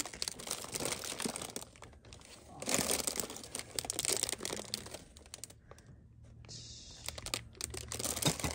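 Cellophane wrapping on bagged ornaments crinkling and rustling as it is handled, loudest about three to four seconds in. A low steady hum sits underneath in the second half.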